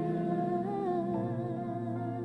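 Live worship music holding sustained chords, with a wordless, humming-like vocal line drawn out over them. It slowly gets quieter.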